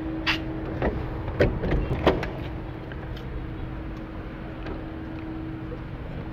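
A metal entry door being opened and passed through: a few sharp clicks and knocks from its lever handle and latch in the first two seconds or so, over a steady low hum.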